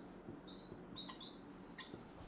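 Whiteboard marker writing: a few short, faint, high squeaks and scratches as the felt tip drags across the board.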